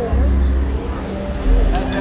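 Voices of people on a busy seaside promenade, heard over a deep, uneven rumble.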